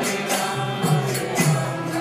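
A group chanting a devotional mantra in unison, with jingling hand percussion keeping a steady beat of about two strikes a second.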